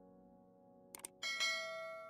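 A quick mouse double-click about a second in, then a bright bell ding that rings and fades, the click-and-bell effect of a subscribe-button animation, over soft sustained background music.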